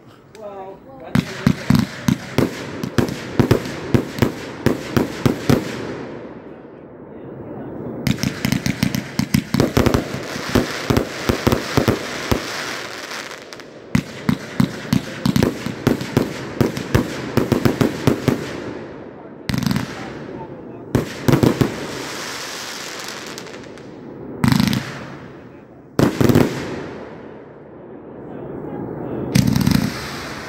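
Multi-shot fireworks cake firing: fast runs of launch thumps and bursting shells, three runs of several seconds each, then a few single louder bursts a couple of seconds apart.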